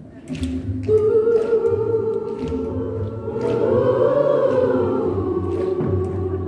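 A woman singing live with orchestral accompaniment, holding one long note from about a second in that rises in the middle and falls back near the end.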